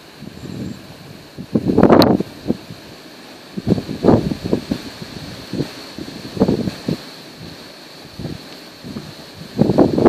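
Wind buffeting the microphone in four or five gusts, with a sharp click about two seconds in.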